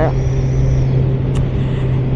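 Kawasaki Z900's 948cc inline-four engine running at a steady cruise, a constant even-pitched hum, under a steady rush of wind and road noise.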